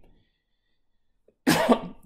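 Near silence, then a man coughs once, loudly and sharply, near the end.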